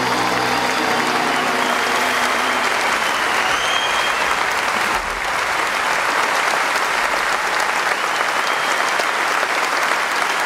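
A concert audience applauding at the close of a song, steady and dense. The last held notes of the band's final chord fade out under the clapping in the first two seconds or so.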